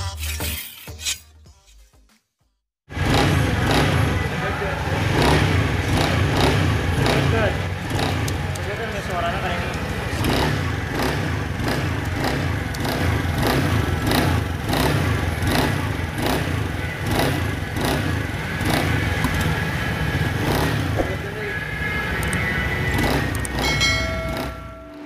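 Honda Beat FI scooter engine running with a rough rattling from the CVT transmission, in regular knocks about twice a second, starting about three seconds in after a short bit of music. The mechanic puts the rattle on pull-away down to a worn bearing in the CVT.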